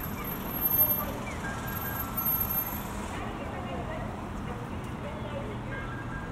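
City street ambience: a steady rumble of traffic with passersby talking.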